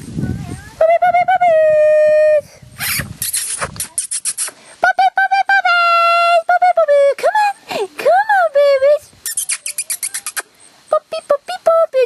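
High-pitched drawn-out vocal cries, some held steady for a second or more and others gliding up and down, with a quick run of short ones near the end.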